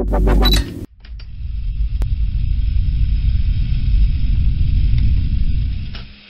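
A loud electronic dance beat cuts off a little under a second in and gives way to a steady, rough low rumble with a faint hiss above it, which fades near the end.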